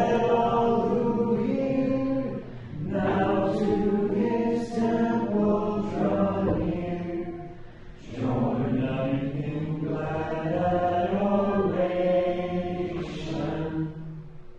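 A church congregation singing a slow hymn together, in three long sustained phrases with short breaths between them.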